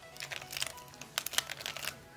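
Square-1 puzzle being turned quickly by hand, giving a rapid string of sharp plastic clicks as its top and bottom layers are twisted and the middle sliced through an Opp/Opp edge-permutation sequence. Background music plays faintly underneath.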